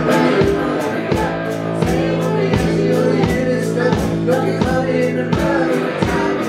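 Live folk-rock duo playing: an acoustic guitar strummed to a steady beat with an electric guitar, under a woman's singing voice.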